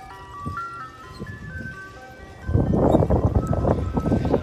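Ice cream truck's chiming jingle playing a simple melody one note at a time. About two and a half seconds in, a loud rumble of wind on the microphone rises over it.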